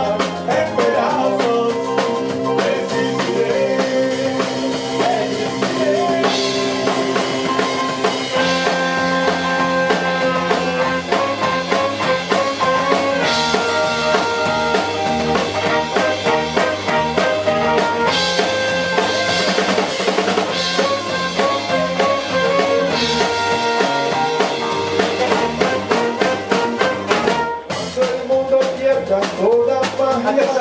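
A live band plays an instrumental passage, with saxophone and trumpet holding long melody notes over electric guitar, keyboard and a drum kit keeping a steady beat. The music stops briefly near the end, then comes back in.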